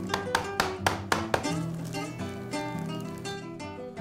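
Background music on acoustic guitar, with quick plucked notes in the first second and a half and held notes after.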